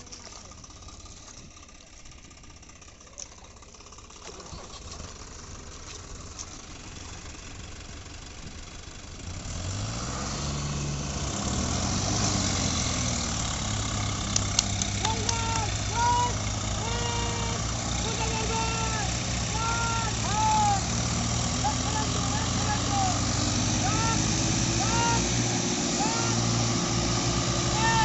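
Tractor diesel engines running, quieter at first, then revving up about nine seconds in and holding high revs under load as a tractor bogged in the mud is towed out. Shouting voices come in over the engines in the second half.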